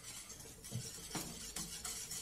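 Wire whisk stirring a milk-and-flour white sauce in an aluminium saucepan, faint, with a few light clinks of the whisk against the pan.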